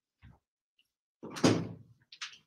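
A soft thump, then about a second in a louder, brief clattering sound of a room door being handled and shut.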